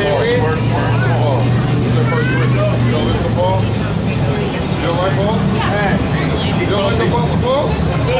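Street noise on a busy city sidewalk: overlapping voices talking over passing traffic. A vehicle engine's low steady hum is strongest for the first few seconds.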